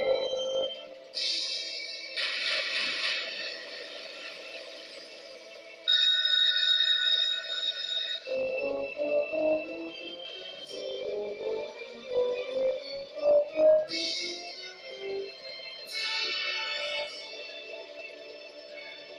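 Legend of Triton video slot machine playing its electronic bonus-round music with bell-like win chimes: bright jingling bursts a second or two long, several times over, and a short run of separate notes in between.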